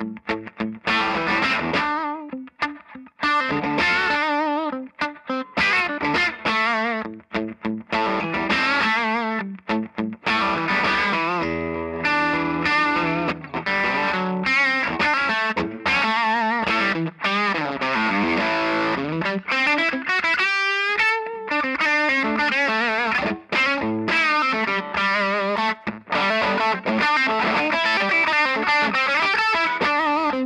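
Electric guitar, a Gibson Les Paul Traditional, played with crunchy distortion through a Marshall 50-watt head into a 2x12 solid-pine cabinet loaded with Jensen C12Q speakers: riffs and lead lines, with string bends and a wide vibrato in the second half.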